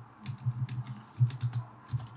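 Computer keyboard being typed on: an irregular run of key clicks with short gaps between them.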